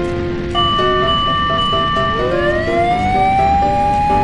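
Cartoon fire-engine siren winding up, a tone rising in pitch from about two seconds in and then holding high, over bouncy background music. A steady high tone sounds from about half a second in.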